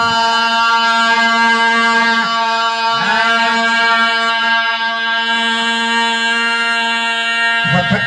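A man's voice holding one long, steady chanted note of a majlis elegy recitation into a microphone, with slight wavers about two and three seconds in. The note breaks off into speech just before the end.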